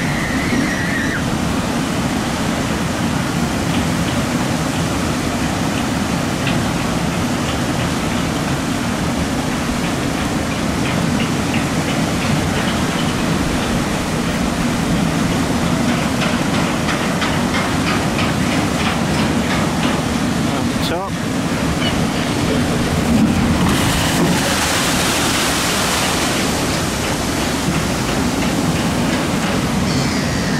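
Steady rush and splash of water pouring off a log flume chute into its flooded pool. A louder hiss comes in for a few seconds about three-quarters of the way through.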